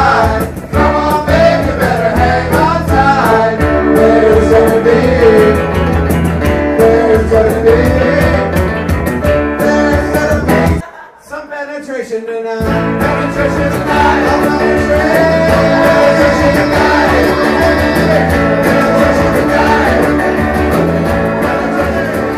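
A live acoustic band playing a song: strummed acoustic guitars with several voices singing. About eleven seconds in the band stops for a second or so, then comes back in together.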